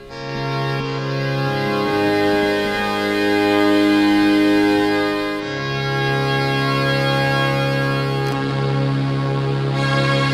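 1974 Solina/ARP String Ensemble string machine playing a slow progression of sustained chords with a low bass note, the chord changing about every two to three seconds. Its ensemble modulation is switched off, so the string tone is plain rather than shimmering.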